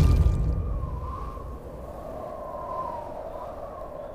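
The low rumble of a sword-slash sound effect dies away in the first second, then a thin, wavering high tone is held under it: a dramatic score drone for the throat-cutting moment.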